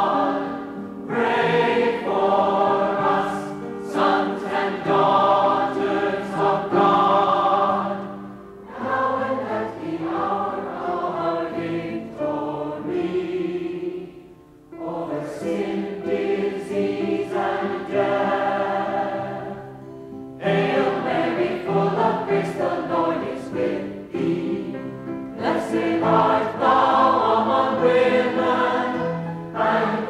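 A choir singing a slow hymn in several phrases, with short breaks between them.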